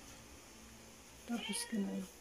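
Quiet room tone, then about a second and a half in a brief woman's voice, a few short syllables ending on a held note.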